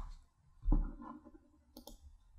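Laptop keyboard and computer mouse in use: a soft, dull knock about two-thirds of a second in, then a short, sharp click near the end.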